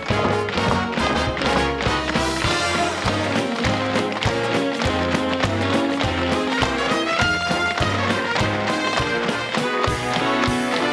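Musical theatre orchestra playing an up-tempo instrumental dance number, with the rapid clatter of tap shoes from the dancing ensemble.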